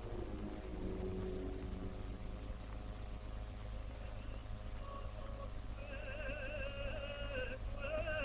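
A high singing voice enters about six seconds in, holding long notes with a wide vibrato and breaking off briefly near the end, over the steady low hum of an old film soundtrack.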